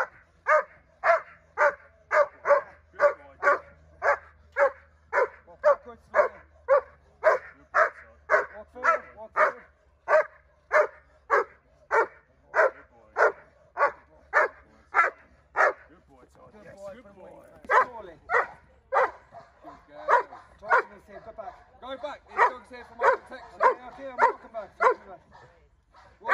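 A Doberman barking fast and without a break, about two to three barks a second, at a helper in a protection-training drill. The barking stops briefly about two-thirds of the way through, then resumes more irregularly.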